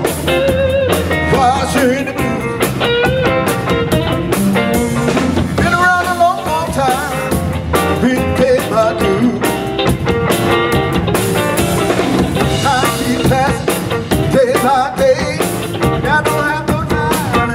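Live blues band playing: electric bass and drums under a lead line of bending, wavering notes.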